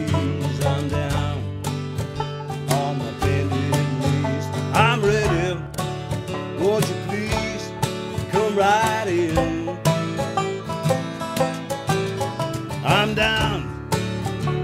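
Irish folk trio playing: a strummed acoustic guitar, a picked banjo and a bodhrán frame drum beaten with a tipper in a steady rhythm, with a man singing over them at times.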